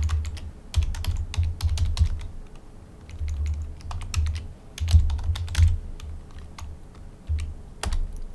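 Typing on a computer keyboard in irregular bursts of key clicks with short pauses between them, each burst carrying low thuds from the keystrokes.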